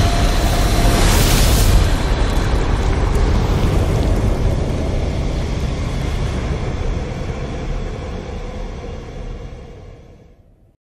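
Sound-design logo sting: a whoosh about a second in over a deep rumbling boom that fades away slowly over the following seconds.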